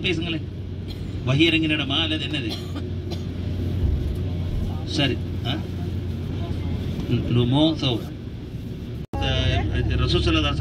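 Steady low engine and road rumble heard from inside a moving bus. A voice talks over it in short stretches.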